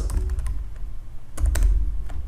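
Computer keyboard keystrokes: a few separate key clicks as a short line of code is typed, the loudest cluster about a second and a half in, over a steady low hum.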